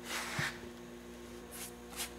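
Faint, brief rubbing against the glued fabric covering, twice, over a low steady hum.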